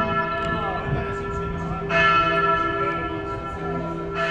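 Church bell tolling: a fresh stroke about two seconds in, each stroke ringing on with a long hum of overtones.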